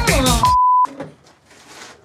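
A short, loud, steady single-pitch beep lasting under half a second and cutting off abruptly: the censor bleep used to blank out a swear word.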